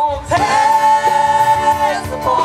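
A woman's lead vocal over a live rock band: a short sung phrase, then one long held high note, with guitars, bass and drums playing underneath.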